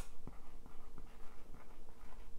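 Whiteboard marker writing on a whiteboard: a quick run of light scratches and short ticks from the felt tip as letters are formed, with a sharper tap right at the start.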